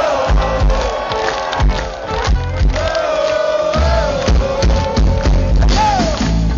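Live heavy metal band playing loud through the PA, a sliding melodic lead line over pulsing bass and drums, with crowd noise mixed in.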